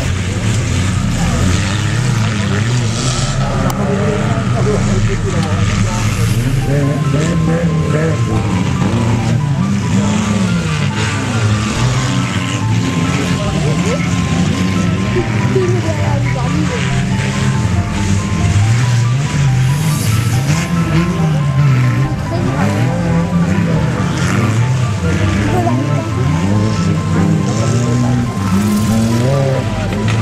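Several stock-car engines revving and running at once on a dirt track, their pitch rising and falling over and over as the cars accelerate and ease off. The sound is loud throughout.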